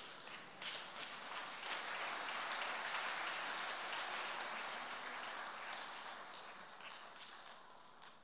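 Church congregation clapping, swelling over the first two seconds and then slowly dying down.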